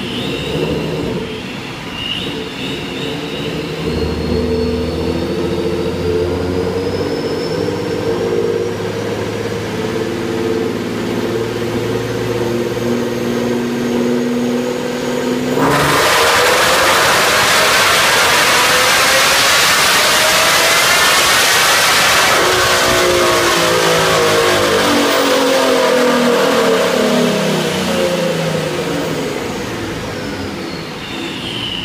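A supercharged 3.7-litre V6 in a 2011 Mustang, with long-tube headers and a Borla exhaust, runs on a chassis dyno. At first it cruises at part throttle while a thin supercharger whine slowly climbs in pitch. About halfway through it goes to full throttle for a loud pull, revving up for about seven seconds, then lifts off and winds down as the rollers coast.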